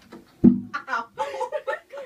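Acoustic guitar bumped while being carried and settled onto a lap: one loud thump about half a second in, with the open strings ringing briefly and dying away. Voices and light laughter follow.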